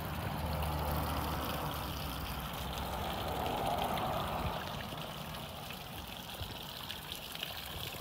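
Electric bilge pump emptying a canoe full of water, its discharge splashing steadily from an outlet in the hull onto grass. A low hum from the pump sits underneath and fades about halfway through.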